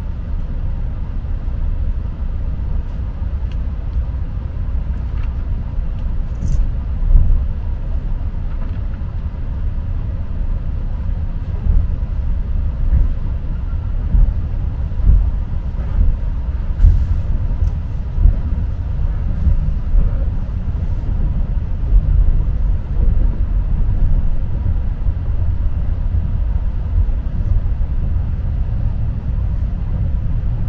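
Keihan Limited Express electric train running, heard from inside the passenger cabin: a steady low rumble with a few short louder thumps through the middle of the stretch.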